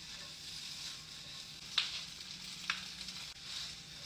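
Gnocchi pan-frying in a skillet, sizzling steadily while they crisp, with two sharp clicks near the middle as the pan is tossed.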